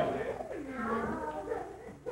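A man's voice making a drawn-out, wordless sound that slides down in pitch, fading out near the end.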